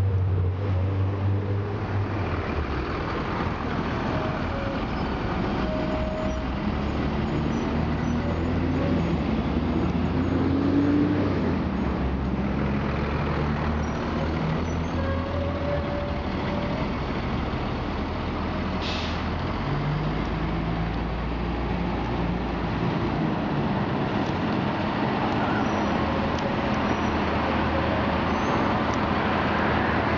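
Diesel transit buses running and moving slowly through a bus terminal, their engines a steady low hum with pitch rising as they pull away. A brief hiss of air comes about two-thirds of the way through.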